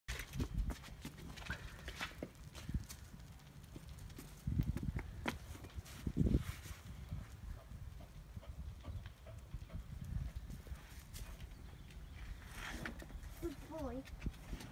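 Scattered footsteps and light knocks on a tiled patio over a low rumble, with a voice starting briefly near the end.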